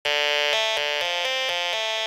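Electronic pop song intro: a synthesizer playing a repeating pattern of held notes that change about four times a second over a steady low pulse.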